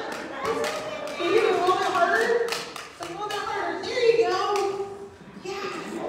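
Several children and an adult talking over one another, with a few light taps.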